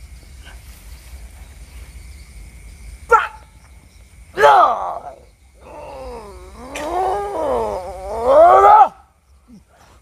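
A man's drawn-out roaring groans with wavering pitch, in three outbursts: a short cry about three seconds in, a loud one a second later, then a long one from about six seconds that swells and cuts off suddenly near nine seconds.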